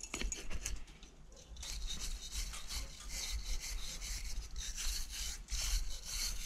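Hand-held steel wire brush scrubbing back and forth over old brick, scratching loose crumbly mortar out of the joints in quick scratchy strokes that grow heavier about a second and a half in.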